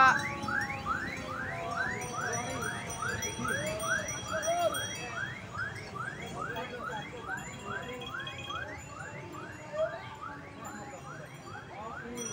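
Electronic siren in a fast yelp pattern, repeating quick rising sweeps about three times a second over a steadier held tone, fading gradually.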